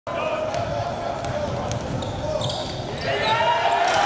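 Basketball dribbled on a hardwood court, repeated bounces, with voices in the gym over it that get louder near the end.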